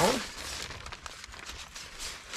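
Fabric cover of a portable clothes dryer rustling as it is handled and unzipped by hand, a soft irregular scratchy noise.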